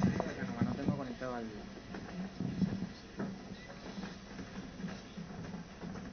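Indistinct voices murmuring in a reverberant room, clearest in the first second and a half and then fainter and scattered.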